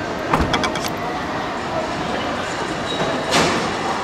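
Steady background noise of a busy showroom hall, with a quick run of clicks and knocks from the camera being handled a moment after the start and a brief louder rustle a little past three seconds.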